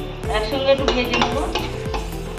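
Background music with a steady beat over cashews and raisins sizzling in hot oil in a nonstick kadai, with a spatula stirring them in the pan.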